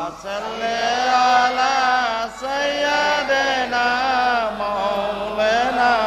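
A boy's solo voice singing a Bengali Islamic devotional song without accompaniment, holding long, ornamented notes that waver and glide in pitch.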